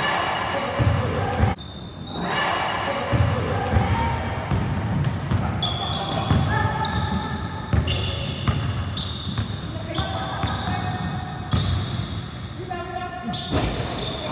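Basketball game on a hardwood court in a gym: a ball bouncing on the floor and many short, high sneaker squeaks, with players' voices calling out in the echoing hall.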